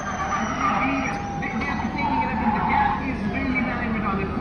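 Formula E electric race car's high-pitched motor whine, falling slowly in pitch as the car pulls away, over crowd chatter.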